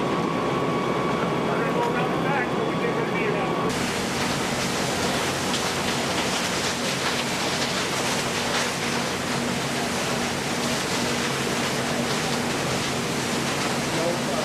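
A steady machinery rumble with a thin constant whine, then an abrupt cut, a few seconds in, to a loud, even hiss of fire-hose water streams spraying onto burning scrap metal, over a low steady hum.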